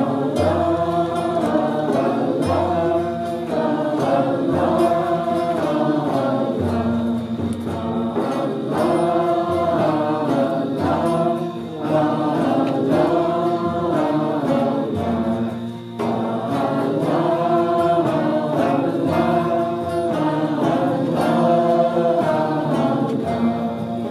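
A group of voices singing a short devotional chant together, repeating the same phrase about every two seconds.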